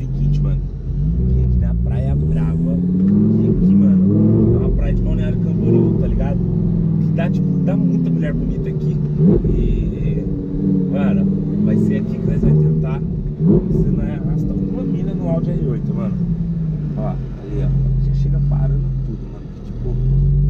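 Audi R8 engine heard from inside the cabin while driving. Its pitch climbs steadily and then drops back several times as the car accelerates through the gears.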